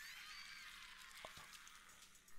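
Cartoon characters roaring and screaming, faint and thin-sounding.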